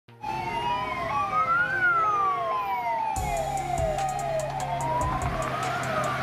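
Emergency vehicle sirens sounding together: a slow wail rising and falling in pitch, overlaid with a faster siren that sweeps down in pitch over and over, about twice a second. A steady low hum joins about three seconds in.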